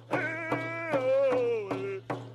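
Indigenous hand-drum song: a singer's voice slides down in pitch over steady drum beats, about three a second. The song breaks briefly at the start and again near the end.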